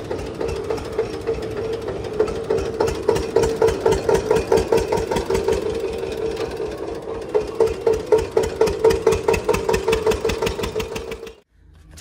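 Tractor's diesel engine running under way, heard from the driver's seat: a steady drone with a regular pulsing beat. It cuts off abruptly near the end.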